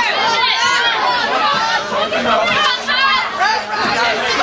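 Crowd of spectators shouting and cheering, many high-pitched voices calling over one another without a break.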